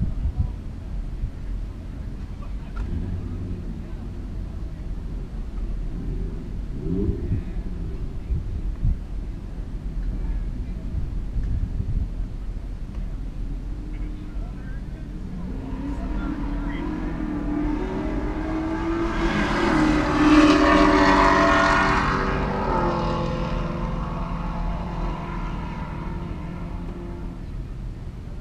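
Drag-race cars, a Chevrolet Camaro and a Chevelle, making a full-throttle pass. Their engines build over several seconds to a loud peak about two-thirds of the way in, then fade away, over a steady low wind rumble.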